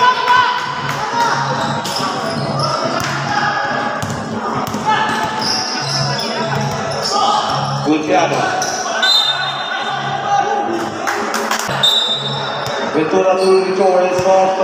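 Basketball game sound: voices from the court and sidelines and a ball bouncing on the court floor, over a steady low beat of background music. A few short high squeaks come in later.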